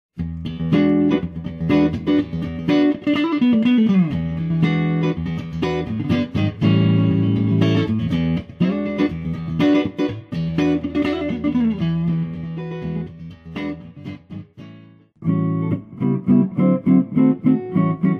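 Fender Deluxe VG Stratocaster electric guitar played through an amplifier, a run of plucked single notes and chords, with one note sliding down in pitch about three seconds in. The playing breaks off briefly near fifteen seconds, then starts again.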